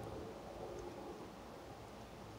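Faint, steady outdoor background noise: an even hiss with a low rumble of wind on the microphone.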